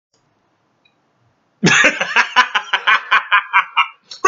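A man laughing: after a second and a half of silence, a run of short bursts at about five a second that grows weaker toward the end.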